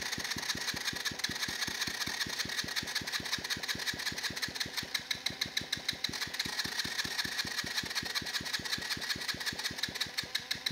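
Electric starter cranking a 50cc quad engine that does not catch: an even rhythm of pulses, about five to six a second, under a steady whine. The builder puts the hard starting down to an old starter that has always struggled on electric start.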